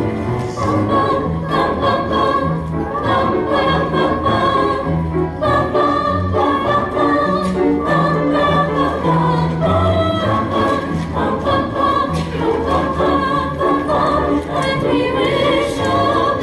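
A mixed school choir of boys and girls singing together, accompanied by an upright piano.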